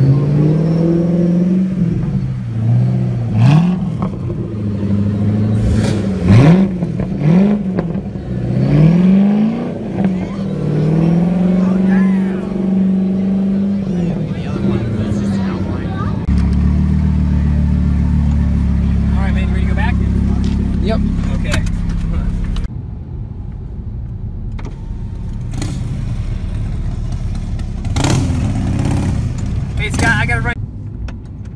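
Ford GT's supercharged V8 revved several times, each rev rising and falling quickly, then running steadily as the car pulls away. A lower, steadier engine drone follows later.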